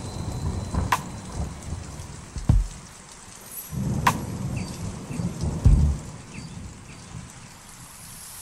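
Recorded rain and thunder sound effect in a music mix: steady rain with several cracks and low rolls of thunder spread through it.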